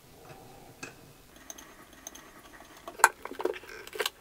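Faint handling noise and small metallic clicks as a braided supply hose's nut is threaded by hand onto a chrome shutoff valve, with a sharper click about three seconds in.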